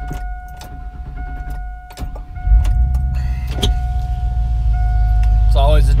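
A steady high warning tone sounds from the Chevy Tahoe's dash, and about two and a half seconds in its V8 engine starts with a sudden jump and settles into a steady low idle rumble.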